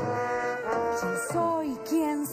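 Clarinet and trombone playing an instrumental passage between sung lines of a song, with several notes bending downward in pitch in the second half.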